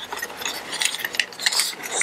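Light metallic clicks and rattles from handling an AR-15 lower receiver and its Law Tactical folding stock adapter parts while the buffer tube is lined up for threading.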